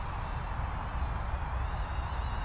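Faint high whine of a Rotorious FPV Speck 80 brushed micro quadcopter's small brushed motors and 55 mm props in flight, wavering in pitch, over a steady low rumble.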